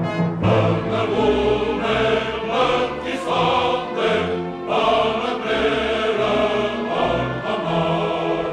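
Choir singing with a symphony orchestra, full sustained chords that shift every second or so over a steady bass.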